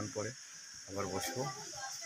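A man talking in short phrases, with a steady high-pitched hiss running underneath.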